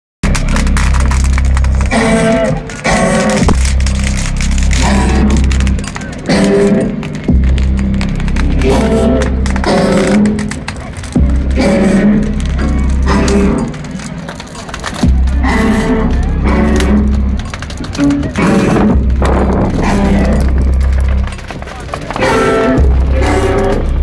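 Live band music played loud through a festival sound system, with a heavy pulsing bass and singing voices.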